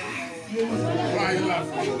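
Several people chatting over one another, with music playing in the background.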